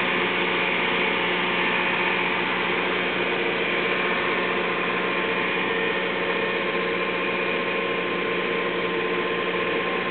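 A car engine idling steadily, an even hum with no change in speed.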